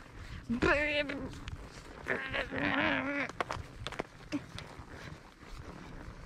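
A person's voice making two short wordless vocal sounds: a brief rising one about half a second in, then a longer wavering one about two seconds in.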